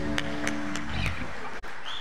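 A worship band's final chord ringing out on electric guitars and fading away, with a few hand claps early on.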